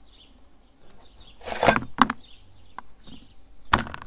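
Metal knocks and scrapes as the perforated plate is worked off a hand-cranked aluminium meat grinder clogged with ice cream: a longer scrape about a second and a half in, a sharp click just after, and another sharp knock near the end.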